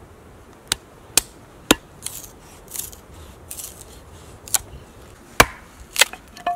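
Small hatchet chopping kindling on a wooden stump block. Three sharp chops come about half a second apart, then softer scraping sounds, then two or three more chops near the end.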